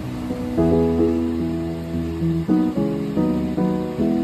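Soft instrumental background music, with new notes and chords coming in every half second to a second.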